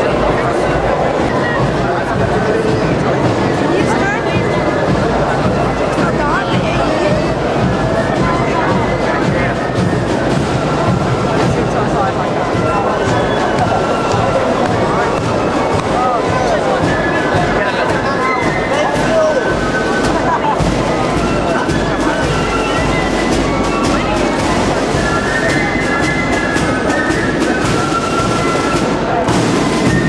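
Crowd chatter as a British military marching band approaches, its drums beating. Held notes from the band's instruments become clear in the second half.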